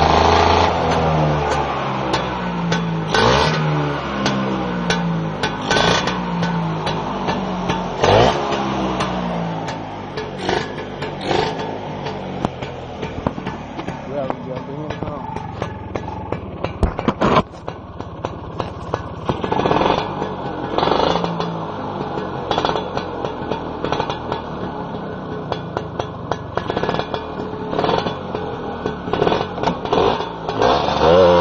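1978 Vespa Sprint V's two-stroke single-cylinder engine, converted to reed-valve induction with a 58 mm piston and 30 mm carburettor, running and revved over and over, its pitch rising and falling with each blip of the throttle. Sharp clicks come through it, with one loud knock about 17 seconds in.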